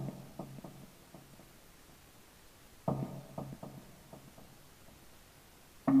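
Quiet intro music: a guitar chord sounds twice, about three seconds apart, each followed by quick echoing repeats as it dies away. Fuller, louder guitar music comes in at the very end.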